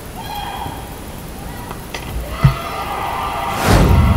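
Channel outro sting: held electronic music tones, a short low hit about halfway through, then a loud whoosh sweep near the end.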